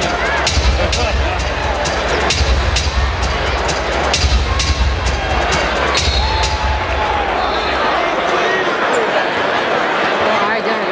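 Music playing over an arena's sound system with a heavy bass beat, over the murmur of the crowd. The bass drops out about three-quarters of the way through, leaving the crowd chatter.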